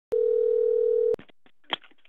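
Telephone ringing tone heard over the line while a call waits to be answered: one steady tone about a second long that cuts off abruptly, followed by faint line hiss and a short click.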